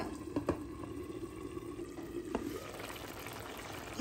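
Spinach-and-mutton curry simmering in a pan, a low steady bubbling, with a couple of light clicks about half a second in as a glass lid is set on the pan.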